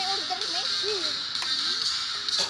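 Children's voices talking and calling out in a group, over a steady high-pitched whine.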